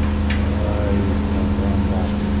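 Bus engine idling, a steady low hum, with faint voices of people nearby.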